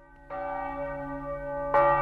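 A church bell struck twice, about a second and a half apart, each stroke ringing on; the second stroke, near the end, is louder.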